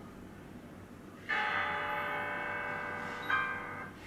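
Music streamed over Bluetooth playing from the head unit through a test speaker: after a quieter first second, a bell-like ringing chord starts suddenly and holds, then stops near the end as the track changes.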